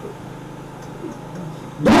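A pause in a man's speech filled by a steady low hum and room tone, then his voice comes back loudly near the end.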